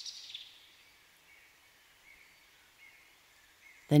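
Faint, high-pitched chirping nature ambience, fading over the first second into near silence.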